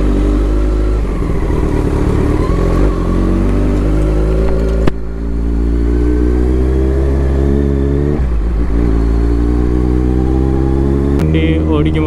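Kawasaki Z900's inline-four engine running under acceleration, its pitch rising steadily. It breaks off with a sharp click and a short dip about five seconds in, then climbs again from a lower pitch.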